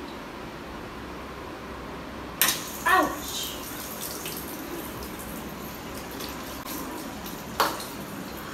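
Bathroom basin tap in a flat left unused for five months, opened until water bursts out suddenly about two and a half seconds in and then runs steadily into the ceramic sink. A brief falling-pitched sound follows just after the water starts, and there is a sharp click near the end.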